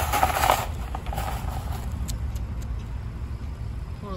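Wire Tomahawk live trap clattering and its metal door scraping open as a feral cat bolts out, a loud burst of rattling in the first half-second. A few light clicks follow over a low steady rumble.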